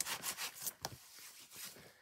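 A cloth rubbing in short back-and-forth strokes over a plastic stencil, wiping ink off it.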